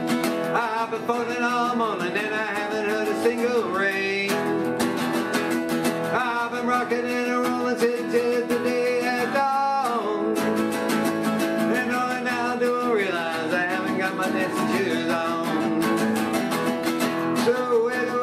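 Acoustic guitar strummed in a steady rhythm under a harmonica playing a melody whose notes slide up and down, a harmonica break between sung verses.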